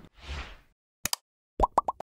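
Animated like-button sound effects: a quick double mouse click, then three quick rising pops, after a soft swish at the start.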